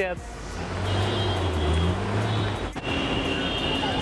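Street traffic: a motor vehicle's engine rumbling and revving up. A sharp click comes a little before the end, followed by a steady high tone.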